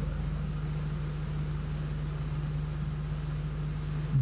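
A steady low hum with one constant tone, over an even hiss: the room's background drone, unchanged throughout.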